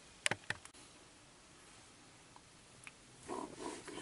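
A few light clicks and taps from a hand handling a small metal potentiometer and hand tools on a workbench: about four quick clicks in the first second and one more just before three seconds, then faint rustling near the end.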